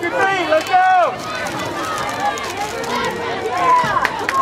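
Several people shouting and calling out over one another, loudest in the first second, as the players and spectators along the sideline of a youth football game yell between plays.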